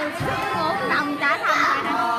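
Music playing while a group of children chatter and shout excitedly, with high rising squeals about a second in.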